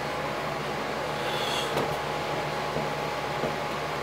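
Steady room hum and hiss, like an air conditioner running, with a faint click just before halfway.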